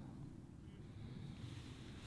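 Quiet outdoor background: a faint low rumble with no distinct event, while a golfer stands over the ball and takes the club back.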